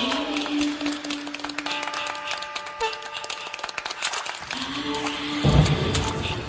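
End-screen outro music: held steady tones that change pitch every second or two, with a deep hit about five and a half seconds in.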